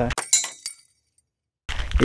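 A short burst of high clinking, crackling noise just after the speech stops, fading within about half a second, followed by dead silence where the video is cut.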